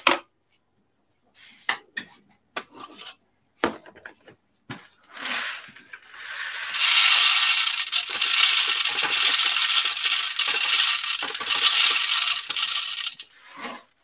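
Whole coffee beans poured into an espresso grinder's hopper: a dense rattling pour of about six seconds, after a few scattered clicks and knocks of handling.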